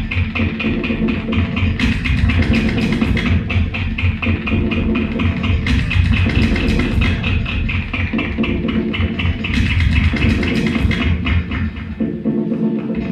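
Experimental music played live on a turntable and looper: a layered loop that repeats about every four seconds, with a fast, even pulse running through it.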